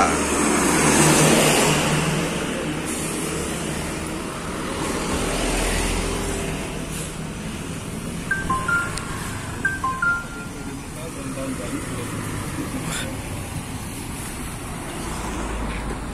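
Road traffic going by, loudest in the first couple of seconds as a vehicle, plausibly the cargo truck seen approaching, passes close. After that comes a steadier traffic noise, with two short two-note beeps a little past the middle.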